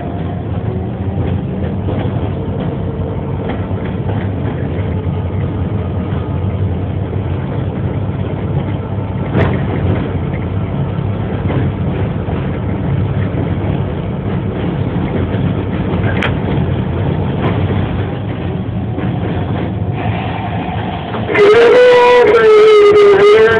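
A moving locomotive heard from its front walkway: a steady low rumble of the engine and wheels on the rails, with a couple of sharp clicks. About a second before the end, a much louder sustained tone with overtones cuts in.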